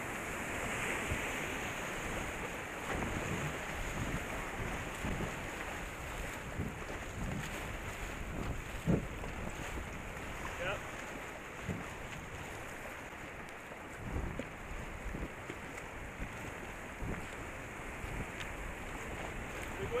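Rushing whitewater of river rapids around a racing canoe, a steady hiss and churn of water. Wind buffets the microphone, with irregular low thumps throughout.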